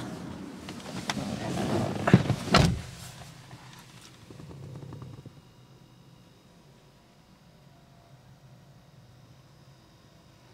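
Inside a Mercedes-Benz C200 CDI's cabin, a rising rush builds and ends in two sharp thunks, like something shutting, about two and a half seconds in. A short hum follows a couple of seconds later, then a faint steady hum.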